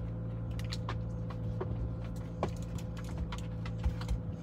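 Car engine idling steadily, heard from inside the cabin, with a few faint clicks.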